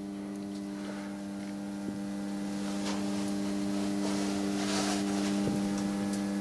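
Steady electrical mains hum from the meter test setup running under load, a buzz with several fixed tones that grows slightly louder over a few seconds.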